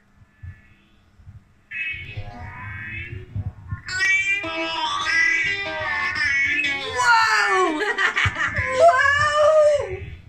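Two people laughing hard from about four seconds in, the laughter sliding up and down in pitch near the end, after a few quieter seconds with soft voice sounds and handling noise.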